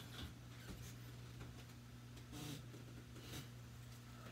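Quiet room with a steady low hum, and a few faint clicks and rustles of a metal-and-brass pneumatic rifle being handled.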